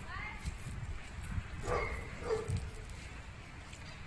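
A dog barking a few times, short separate barks, the first one falling in pitch.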